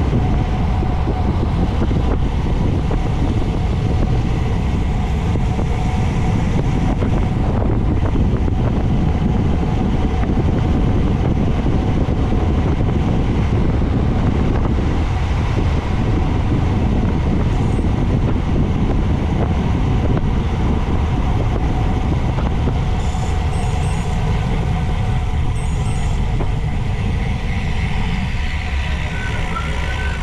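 Steady rush of wind over a bike-mounted camera's microphone, with tyre noise on asphalt, as a road bicycle rolls along at speed.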